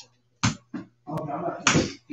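Playing cards slapped down on a table playmat during a card game: a few short, sharp smacks, the loudest near the end.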